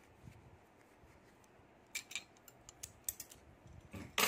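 Faint handling sounds from hands working a stuffed crochet piece: a few light, sharp clicks and taps, a pair about two seconds in and a small cluster around three seconds in.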